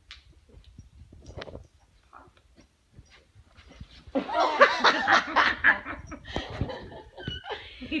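A person laughing for about three seconds, starting about four seconds in, after a stretch of faint scattered knocks.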